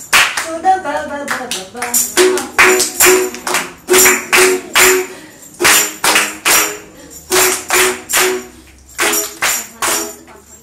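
Group sing-along music: strummed ukulele chords in short, sharp strokes with hand clapping, in a repeated pattern of three beats and a pause, after a brief sung phrase near the start.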